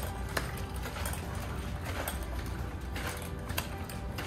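Hard cider sloshing inside a small stainless steel keg as it is shaken hard to mix in sugar that has just been added, with a few sharp metal clicks from the keg and its handles.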